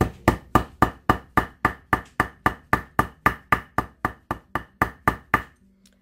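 Jewelry hammer striking the tip of a wire laid on a granite slab, flattening it into a paddle: a fast, even run of about four blows a second, each with a short light ring, stopping shortly before the end.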